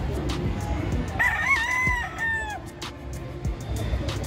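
A gamefowl rooster crowing once, starting about a second in. The call rises, holds and falls away over about a second and a half.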